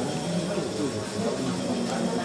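Indistinct chatter of several people talking at once, a steady murmur of overlapping voices with no clear words.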